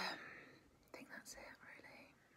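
Only soft, whispered speech from a woman, quiet between her spoken answers.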